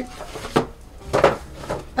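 A few short rustles and clinks: a paper shopping bag being handled and a handbag's metal chain strap jingling as the bag is pulled out.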